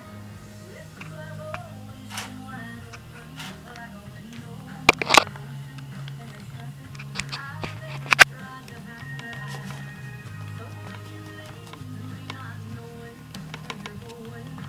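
Music playing from a radio, with steady low notes that shift from time to time. Short, sharp knocks cut in about five seconds in and again about eight seconds in.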